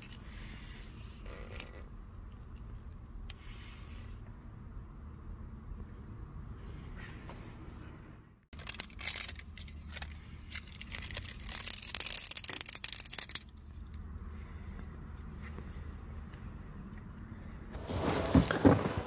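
Scuffing and scraping against a rubbery TPE all-weather floor mat for about four seconds, starting about halfway through: a test of the mat's slip resistance. A faint steady hum runs before and after it.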